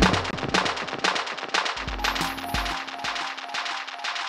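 Electronic dance music in a breakdown: a fast run of crisp drum hits over a held synth tone, with the low bass mostly pulled out and coming back only briefly near the middle.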